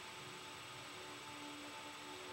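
Faint lull in an instrumental backing track: a soft held note with low hum.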